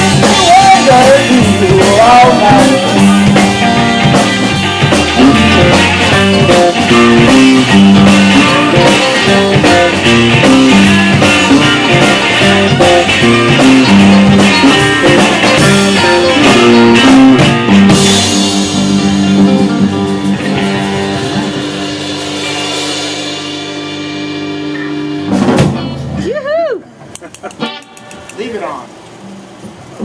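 Live rock band with electric guitars and a drum kit playing a loud blues-rock number, with singing near the start. The song ends about 18 seconds in on a held chord that rings and fades, followed by a single final hit about 25 seconds in.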